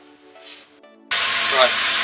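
Workshop machinery starts running: a loud, steady hiss that cuts in abruptly about a second in and holds level.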